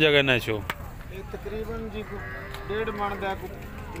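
Cattle lowing: a loud call falling in pitch dies away just after the start, then a second, longer and steadier call runs from about a second in to past the middle.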